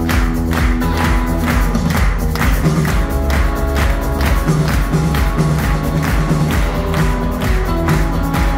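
Live pop band music with a steady, driving beat over bass and keyboard chords.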